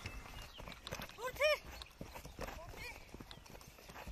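Short high-pitched shouted cries from players: a pair of quick rising-and-falling calls about a second and a half in, and a fainter one near three seconds. Scattered short knocks and thuds run underneath.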